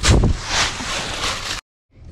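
Rushing, rustling noise of wind and handling on the camera microphone, with a heavy low rumble at the start, cut off abruptly about a second and a half in.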